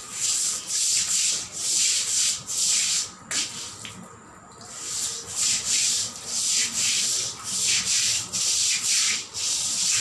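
Stiff-bristled floor brush scrubbing wet floor tiles in back-and-forth strokes, about two a second, with a short pause about three and a half seconds in.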